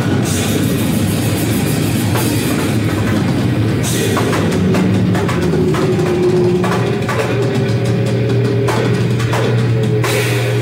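Live heavy metal band playing at full volume: distorted guitar and bass over a pounding drum kit, with a low note held through the second half.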